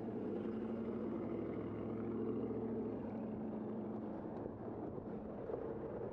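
Engine of a Ram 1500 pickup running close by, a steady low pitched hum that fades after about four seconds.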